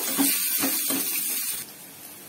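Whole spices, shallots and garlic sizzling in oil in a stainless steel pan, with a few light clicks; the sizzle drops sharply near the end.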